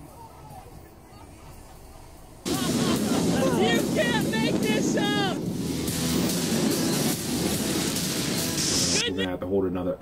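Model rocket motor lighting with a sudden loud rush about two and a half seconds in, as the rocket lifts off. Excited shouting and music run over it until near the end.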